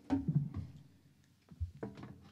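Handling noise as electric guitars are lifted off stands and swapped: scattered knocks and clicks, with a low thump about a second and a half in.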